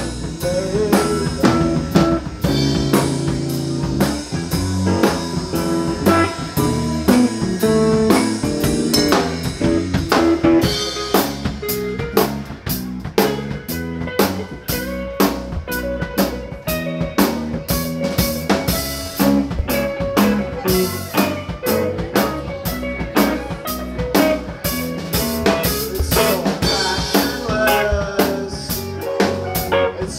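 Live band playing: electric guitars, bass guitar and drum kit, with the drum beat growing busier about ten seconds in.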